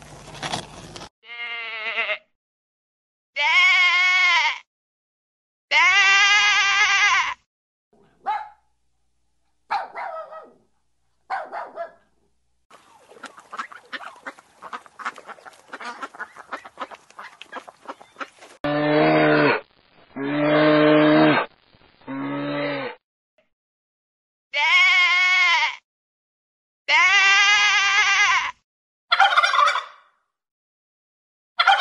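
A string of farm-animal calls: drawn-out bleats of about a second each, a stretch of faint pattering and clicks, then three short, low-pitched calls in quick succession, followed by two more bleats.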